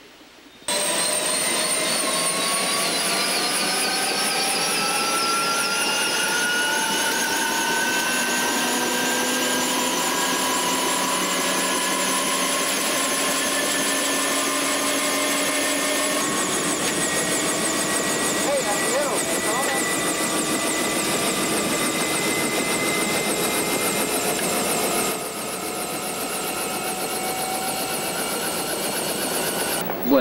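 Helicopter turbine engine whining loudly, starting abruptly about a second in and rising slowly and steadily in pitch as it spools up; the sound drops a little in level near the end.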